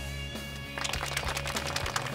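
Soft background music with sustained notes; a little under a second in, a crowd of wedding guests starts applauding, a dense patter of hand claps over the music.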